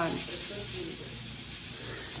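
A woman's last word, then a steady hiss that runs on under the pause.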